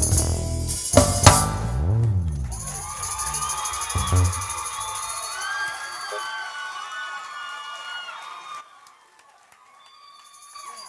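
A school stage band ends its song with loud drum hits, a crash and a last sweep of bass in the first two seconds, then the audience cheers and whoops, fading away by about nine seconds in.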